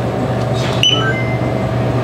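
A few short electronic beeps at different pitches, about a second in, from checkout equipment ringing up an item. They sound over a steady low hum from the store's fridges or ventilation.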